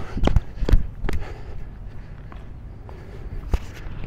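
Tennis balls being struck by rackets and bouncing during a groundstroke rally: a few sharp, irregularly spaced pops, the loudest about three and a half seconds in.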